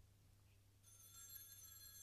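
A small bell struck once about a second in, its high ring fading over the next second or two, faint over a low steady hum.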